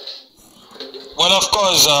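A man's voice starting to speak about a second in, after a stretch of fainter, indistinct sound.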